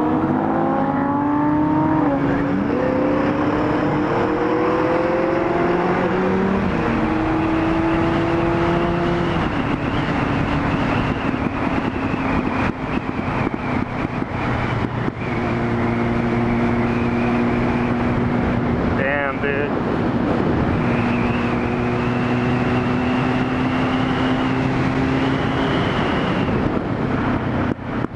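Small sport motorcycle's engine heard from the bike itself, rising in pitch as it accelerates, dropping back at a gear change and rising again, then holding a steady pitch at cruising speed. Wind and road noise run under it throughout.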